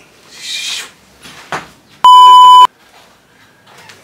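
A single loud electronic bleep, one steady pitch held for about half a second and cut off sharply, about two seconds in; an edited-in bleep tone.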